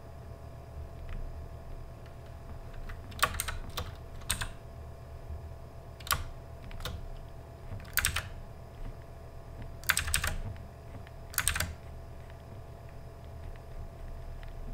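Scattered clicks of a computer keyboard and mouse, about a dozen between roughly three and twelve seconds in, several in quick pairs, over a low steady hum.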